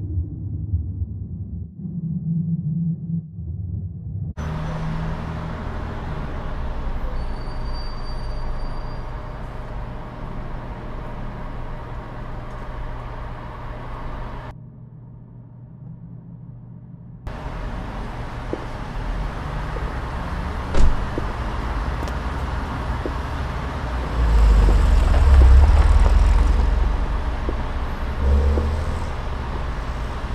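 Car noise: a steady low rumble of engine and road, dropping away briefly in the middle. There is a single sharp knock about two-thirds of the way through, then a louder swell of low rumble shortly after.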